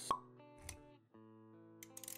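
Intro music with a sound effect: a sharp pop just after the start, a softer click a little later, then sustained notes that resume after a short break about a second in.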